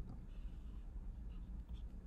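Faint scratching of a stylus drawing on a pen tablet, brief and soft, over a steady low hum.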